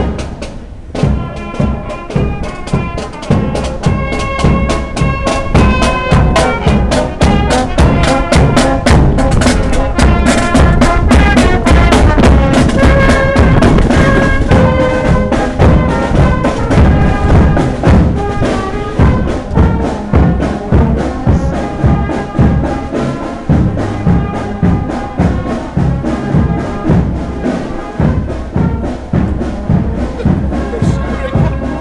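Marching brass band playing a march: sousaphones, trombones and trumpets in sustained chords over a steady drum beat of about two strokes a second. It is loudest in the middle and fades somewhat toward the end as the band moves on.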